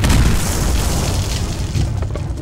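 Loud explosion sound effect, a deep boom rumbling and slowly dying away. Music begins to come in right at the end.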